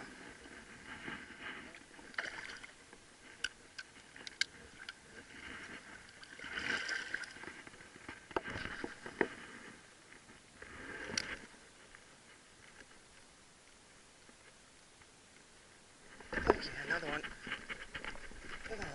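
Water sloshing and splashing around a wading angler's legs and hands as a snook is released, with scattered sharp clicks of the fishing tackle and a louder burst of noise near the end.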